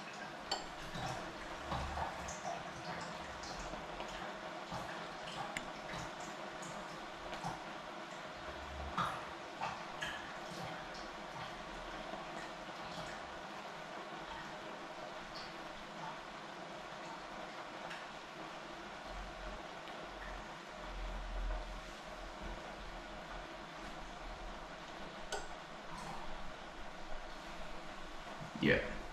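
Tap water running steadily, with a few small clicks and knocks of things being handled.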